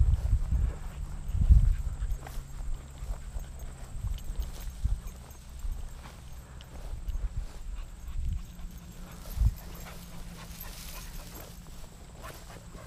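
Footsteps of a person walking through tall, dry grass: irregular low thumps from the footfalls and the body-mounted camera, with grass brushing.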